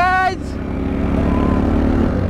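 A single-cylinder Bajaj Pulsar NS 200 motorcycle engine runs steadily at cruising speed, a continuous low drone. A voice calls out briefly at the very start.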